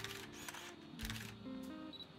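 Pentax MZ-50 film SLR firing in continuous drive: the shutter and motorised film advance cycle twice, about two-thirds of a second apart, over soft background music.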